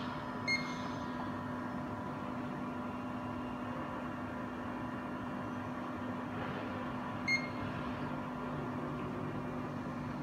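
Two short, high beeps about seven seconds apart from a Zeiss Contura coordinate measuring machine, each marking the probe stylus touching the part and taking a measurement point, over a steady machine hum.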